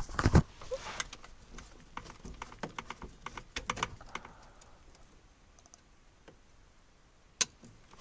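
Screwdriver clicking and scraping against the slotted screws and plastic steering-column cover of a Trabant 601 as the cover is worked loose. A quick run of small clicks thins out after about four seconds, and one sharp click comes near the end.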